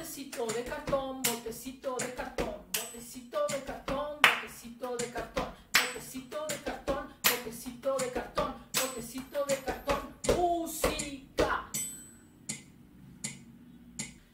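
Body percussion: hand claps and slaps on the thighs in a quick, steady rhythm, with a woman's voice chanting along. It stops about eleven and a half seconds in, leaving a few light taps.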